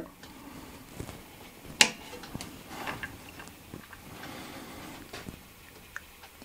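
A single sharp click a little under two seconds in as the Elegoo Mars resin printer's power switch is flipped on, with a few fainter clicks and light handling rustle around it over quiet room noise.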